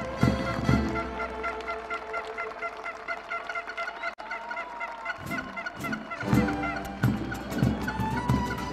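Live malambo performance: rhythmic zapateo foot stomps over instrumental folk music. The stomping stops about a second in, leaving a short repeating melodic figure, and the stomps return about six seconds in.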